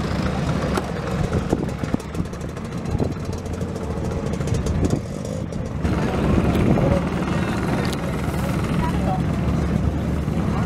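Motor scooter engines running steadily among the parked scooters, mixed with indistinct voices of the surrounding crowd.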